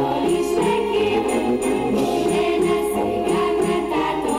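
A chorus of children singing a stage-musical number over instrumental accompaniment, with a steady, bright percussive beat.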